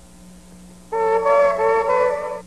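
A brief quiet gap with a faint steady hum, then about a second in a sustained chord of wind-instrument-like tones starts and holds: the opening of the next recorded track played over the sound system.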